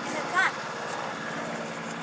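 An engine running steadily at an even pitch, with a short rising voice sound about half a second in.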